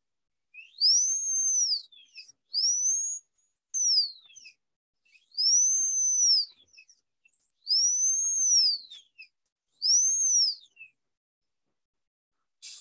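High-speed air-turbine dental handpiece (drill) run in about five short bursts. Each burst spins up to a high steady whine, holds it for about a second and winds back down, with a faint hiss of air and spray above it.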